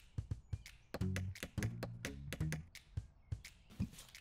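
A hammer tapping in a rapid run of many light knocks, with a short music cue and low bass notes underneath.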